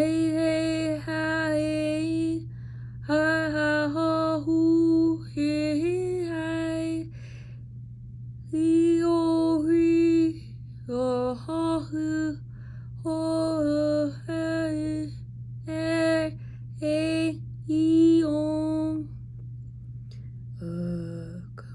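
A woman singing unaccompanied: wordless held notes in about a dozen short phrases with brief pauses between them. A steady low hum runs underneath.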